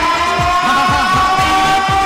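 Arab wedding music: a folk wind pipe holds one long note that rises slightly in pitch. Underneath runs an electronic beat of deep bass-drum hits that fall in pitch.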